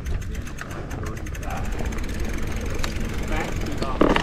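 Mountain bike rolling along a dirt trail: a steady low rumble of wind buffeting the microphone and tyres on dirt, with light rattling clicks from the bike.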